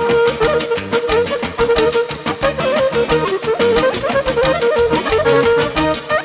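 Fast traditional dance music from a band: a quick, even beat under a lead line that holds one long note with ornaments around it.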